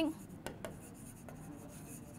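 Chalk writing on a blackboard: faint scratching strokes with a few light taps as a word is written.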